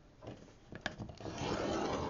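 A scoring stylus and cardstock on a scoring board: a couple of light clicks, then a soft scraping rub across the paper that builds through the second second.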